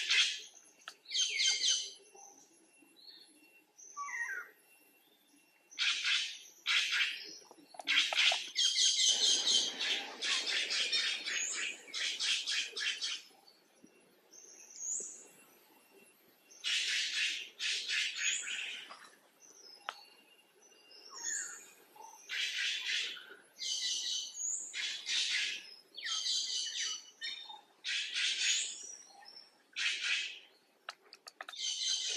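Birds calling in the trees: short, high, rapid chattering bursts, repeated every second or two with brief gaps.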